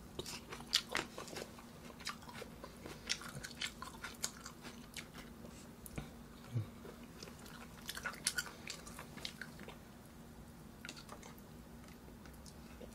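A person chewing and biting food close to the microphone, grilled beef galbi, with many short clicking mouth sounds in bouts that thin out and quieten near the end.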